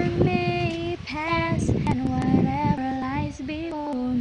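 A young child singing a slow worship-song melody, holding long notes with steps in pitch between them.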